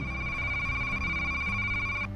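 A steady, high electronic beep tone held for about two seconds without change, then cutting off suddenly, over faint background music.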